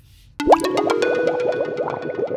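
Edited-in cartoon sound effect: a sudden pop about half a second in, then a fast run of short, bouncy plinking notes, about ten a second.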